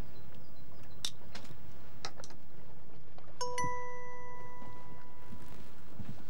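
A few faint clicks, then about three and a half seconds in a single struck chime rings out with a clear, steady tone that fades away over about two seconds.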